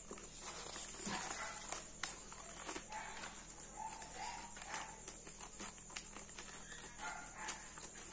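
Scissors snipping folded paper, with the paper rustling as it is handled: a scatter of short, irregular clicks and crinkles.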